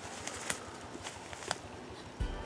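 Footsteps crunching through dry fallen leaves, with a few sharper crackles, the clearest about half a second and a second and a half in.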